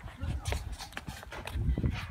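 Footsteps on pavement mixed with low rumbling and knocking from a phone being handled and carried, with faint voices in the background.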